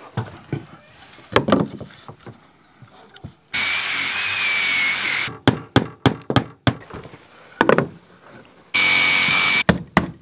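A cordless drill runs with a steady high whine twice, about a second and a half and then about a second, pre-drilling nail holes through brittle concrete (fibre-cement) trim board. Between and after the drilling come quick sharp knocks, the last of them hammer blows on a galvanized nail.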